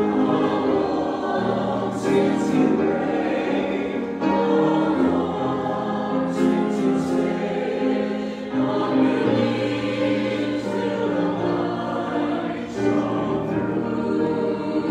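Small mixed choir of men's and women's voices singing, holding chords that change every second or so, with the words' 's' sounds cutting through now and then.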